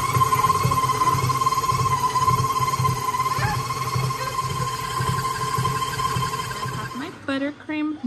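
KitchenAid stand mixer running steadily, its beater whipping buttercream in a steel bowl: a constant motor whine over a low churning hum, which cuts off about a second before the end.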